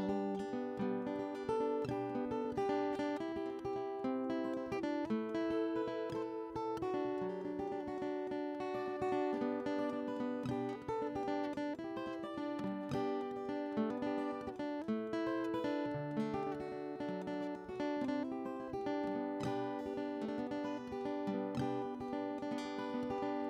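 Solo acoustic guitar playing an instrumental passage, picked notes and strummed chords at a steady, unhurried pace.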